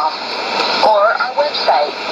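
An English-language radio announcement received on 9735 kHz shortwave AM, played through a Sony ICF-2001D receiver, with a steady hiss of band noise under the voice. The speech is faint at first and picks up again about a second in.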